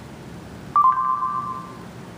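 Google voice search chime from an Android phone's speaker: one short ping that steps slightly down in pitch and rings out for about a second, the tone that marks the end of listening once the spoken query has been taken in.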